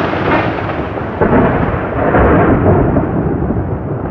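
A loud, steady rumbling noise with no pitch, cut in abruptly, its high end slowly fading away.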